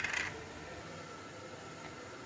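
Faint steady room hiss, with a brief dry rustle right at the start as crushed crispy flakes settle onto the marinated chicken wings.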